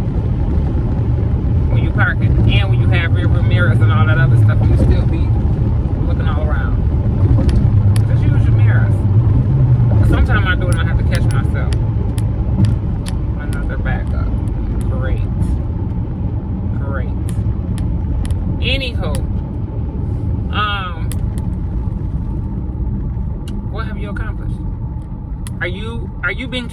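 Car engine and road rumble heard from inside the cabin of a moving car, louder over the first ten seconds and then easing off, with a voice coming and going over it.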